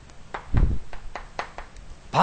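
Chalk writing on a chalkboard: a few short sharp taps and clicks, with a dull thump about half a second in.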